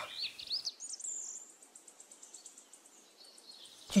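Songbirds chirping: a few quick sliding whistles in the first second, then a faint, rapid high-pitched ticking that fades away.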